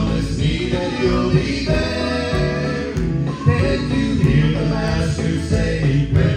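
Male southern gospel vocal trio singing in harmony into microphones, over an instrumental accompaniment with a steady bass line.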